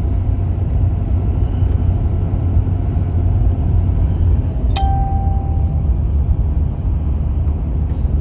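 Steady low rumble of road and engine noise inside a moving vehicle's cabin. About five seconds in, a click is followed by a single beep-like tone that lasts about a second.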